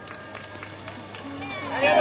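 Parade music in a quiet passage under crowd voices and scattered light taps, then swelling up loudly about a second and a half in as a voice glides into a new sung phrase.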